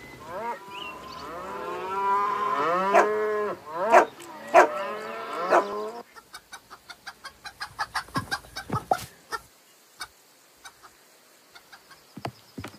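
Cartoon soundtrack of animal-like calls, rising and falling in pitch and repeating for about six seconds. Then comes a quick run of clicks, about four a second, that thins out to a few scattered clicks near the end.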